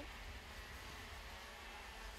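Faint steady background noise: a low rumble under a soft hiss, with no distinct engine note.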